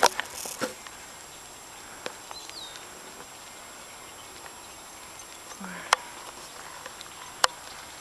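Quiet outdoor background hiss broken by three isolated sharp clicks, at about two seconds, six seconds and near the end.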